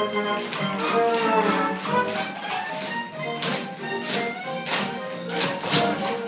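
Upbeat live orchestra music for a stage musical dance number, with repeated sharp taps of dancers' shoes on the stage floor over it.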